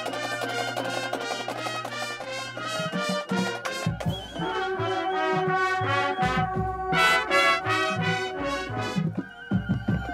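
A marching band playing: massed brass (trumpets, trombones, sousaphones) over a steady beat from the drum line.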